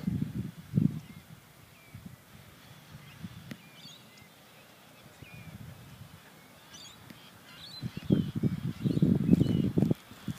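Small birds chirping faintly now and then, with a low irregular rumble of wind on the microphone, strongest in the last two seconds.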